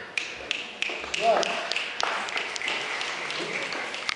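Small audience applauding the end of a poem: a few scattered claps at first, then steadier clapping, with a short voice calling out about a second in.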